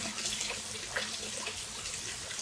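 Steady rush of running water close to the microphone, with a few faint ticks.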